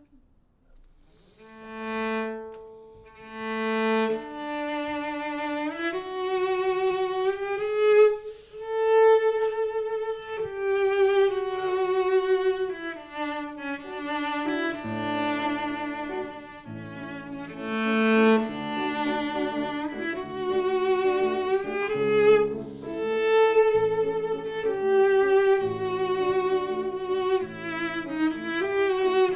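Cello and piano playing the major-key section of a virtuoso variation piece. The cello enters alone with two long swelling notes, then plays a singing melodic line; piano bass notes come in more clearly about halfway through.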